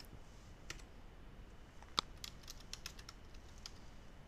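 Faint computer keyboard keystrokes, scattered clicks with one sharper keypress about two seconds in, as a command is entered and a password typed at a terminal.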